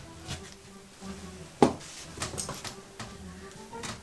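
Soft background music, with a sharp metallic click about one and a half seconds in and a few lighter clicks after it: the small lobster-claw clasp on a brooch chain being handled and unclipped.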